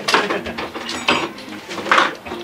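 Ratcheting hand screwdriver clicking in short irregular runs as it backs out a screw holding a metal rail above a doorway.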